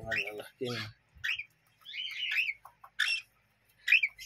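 Young pet birds, cockatiel chicks among them, giving short, high chirps, repeated several times at uneven intervals.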